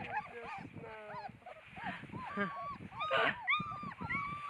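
Puppies whimpering and yipping in many short, high squeaks that rise and fall in pitch, with a louder flurry a little after three seconds.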